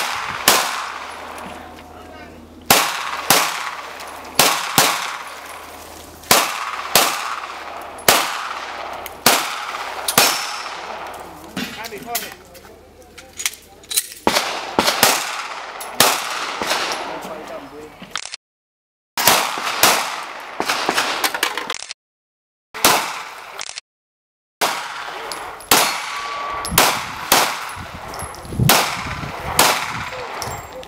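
Semi-automatic pistol shots fired in rapid strings, often two in quick succession, each a sharp crack with a short echo after it. The sound cuts out completely for a moment a few times around the middle.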